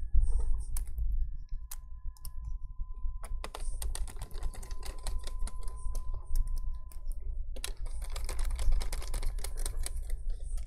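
Irregular small plastic and metal clicks and taps from handling a laptop's CPU fan assembly as it is dropped into place in the open chassis, with low bumps of the hand against the laptop and work surface. A faint steady high tone runs from about two seconds in to about seven seconds in.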